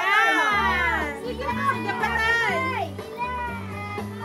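High-pitched voices calling out excitedly, with background music whose bass line comes in about half a second in.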